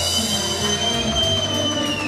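Live band music with an electric bağlama (saz) being played, and a thin high tone held for about two seconds over it that bends down as it ends.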